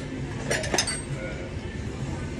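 A few sharp clinks of dishes and cutlery, clustered a little over half a second in, over a steady restaurant background.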